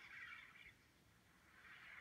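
Near silence: a faint hiss that fades away in the middle and comes back near the end, in a pause of the phone's playback.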